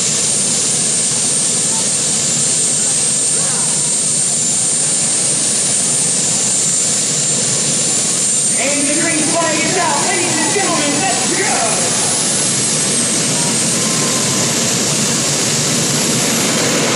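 Gas-turbine engines of a modified pulling tractor idling with a steady high-pitched whine while it waits at the line hooked to the sled. A man's voice comes in over it a little past halfway for a few seconds.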